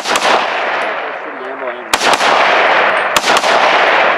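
Three rifle shots, one at the start, one about two seconds in and one a little after three seconds, each followed by a long echo.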